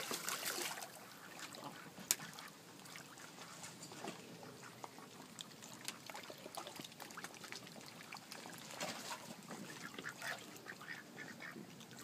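White domestic ducks quacking now and then, with the splashing of a dog paddling in the water close by. It is loudest in the first second, and there is a sharp click about two seconds in.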